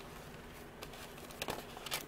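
Faint crinkling of foil trading-card booster packs being handled in a plastic box tray, with a few small clicks from about a second in.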